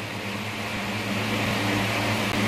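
Steady low mechanical hum with an even hiss, the kind of room background noise a running fan or air conditioner makes.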